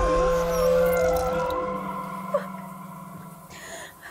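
Tense horror-film score: a sudden loud sting that holds steady, eerie tones with a wavering, howl-like edge, fading away over a few seconds.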